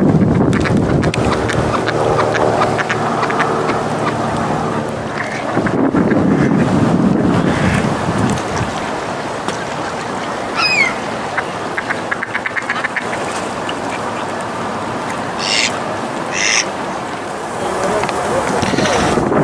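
Mallard ducks quacking, mostly in the first half, over a steady rush of wind on the microphone. Near the end there are two short, higher calls.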